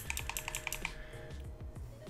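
Computer keyboard keys tapped in a rapid run of about a dozen clicks through the first second, then stopping. Faint background music with held tones continues underneath.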